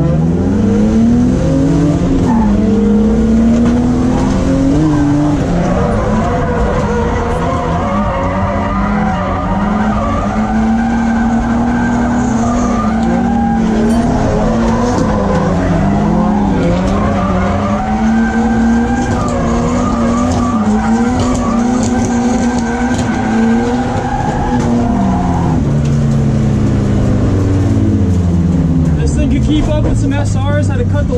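BMW E36 328is's M52 inline-six, heard from inside the cabin, revving up hard at the start and held high in the revs through a drift, with tires skidding and squealing. Near the end the revs fall away in steps as the car comes off the throttle.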